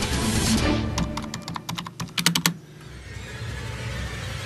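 Title-sequence music, then about a second and a half of rapid computer-keyboard typing clicks, ending in a quick cluster of sharp clicks. After that a quieter, steady low music bed carries on.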